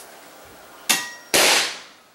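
A hammer strikes the plunger of a Ramset hammer-activated powder-actuated nailer with a ringing metallic clang, and about half a second later the .22 powder charge fires with a loud bang that dies away over about half a second. This shot drives a nail toward the concrete floor, but the nail bends underneath instead of going in.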